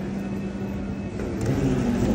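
Steady low mechanical hum of an airport terminal at a running escalator, with one constant low tone, growing a little louder about halfway through.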